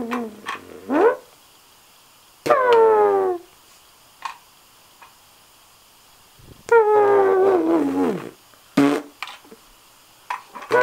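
A series of drawn-out, wordless vocal cries, most sliding down in pitch. A short rising one comes about a second in, a falling one at about two and a half seconds, a longer falling one from about seven to eight seconds, and a brief one near nine seconds. There are short pauses and a few light clicks between them.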